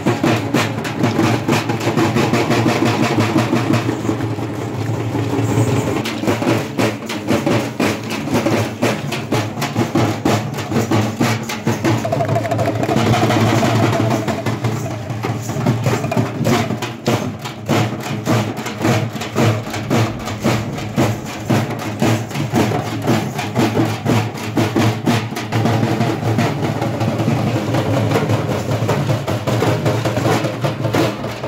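Procession drum troupe playing a fast, driving beat on large stick-beaten barrel drums and hand-held frame drums, the strokes dense and unbroken.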